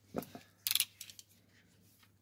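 A brief, sharp scrape under a second in: a shoemaker's knife on leather, skiving the edge of a leather insole over an iron last. A faint handling knock comes just before it.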